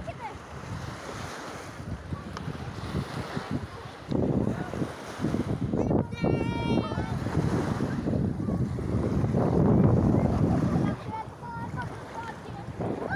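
Wind buffeting the microphone over small waves washing onto a sandy shore. The wind gusts louder from about four seconds in until near the end.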